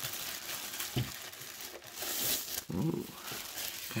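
Thin plastic bag crinkling and rustling as it is handled and pulled off an object.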